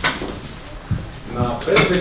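A few soft knocks and thuds, with a voice starting near the end.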